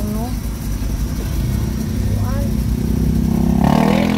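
Motor traffic heard through an open car window: a steady low engine and road rumble, with an engine revving up, rising in pitch, near the end.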